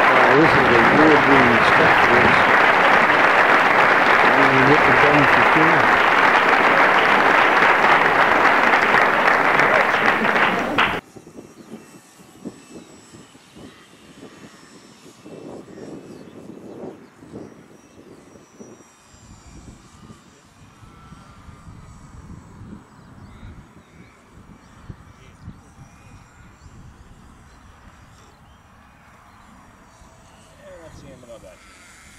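Radio-controlled model aeroplane in flight: a loud rushing propeller noise with gliding pitch for about eleven seconds, which cuts off abruptly, leaving only faint sounds of the plane for the rest.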